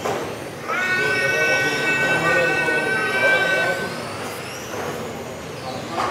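Electric RC touring cars racing: a high motor whine rises about half a second in, holds nearly steady for about three seconds, then fades, over the constant noise of other cars on the track.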